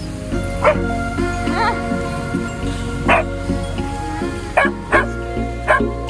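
A dog barking and yipping in about six short calls over background music, one of them a wavering yelp.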